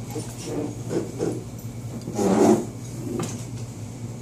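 Rustling and shuffling of fabric and handling noise as caps are put on, over a steady low hum. A brief muffled voice-like sound comes about two seconds in.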